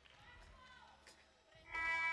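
Faint outdoor court ambience, then near the end a loud, steady sound of several held tones starts over the arena's sound system, most likely the horn or music that marks the stoppage for a timeout.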